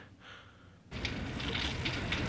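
Faint room tone, then about a second in a sudden cut to the steady noise and crackling of an overturned ambulance burning.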